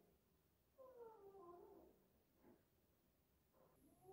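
Near silence, with one faint, short pitched sound about a second in that falls slightly in pitch.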